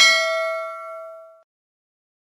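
A notification-bell sound effect: one bright ding with several ringing tones that fade out about a second and a half in.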